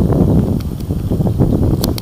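Wind buffeting a small handheld camera's microphone: a loud, uneven low rumble.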